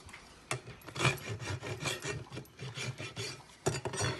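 Farrier's hoof rasp filing a horse's hoof wall around the nail ends in repeated rough strokes, about two a second.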